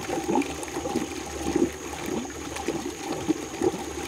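Fermenting tea spiraling in a vortex inside the KNFVortex brewer's bucket, churning steadily with irregular gurgles and splashes as water and air come out of the outlet pipe.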